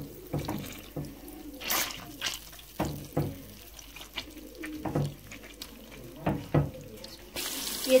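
Pieces of marinated chicken dropped one by one into hot butter in a karahi, each landing with a short splat and sizzle, about a dozen in all at irregular intervals. Near the end a louder, continuous frying sizzle starts as the pan fills.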